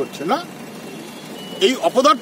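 A man speaking, broken by a pause of about a second filled with low street background noise; a faint high steady beep sounds briefly near the end of the pause, just before the speech resumes.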